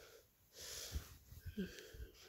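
Faint breathing close to a phone microphone, soft swells of breath, with a few light handling knocks.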